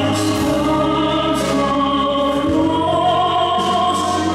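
Live classical-crossover music: a small orchestra with violins plays under operatic-style singing, with sustained notes that waver with vibrato.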